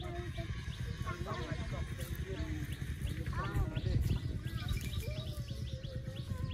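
Several people talking, unclear and off-mic, with short bird chirps over the voices.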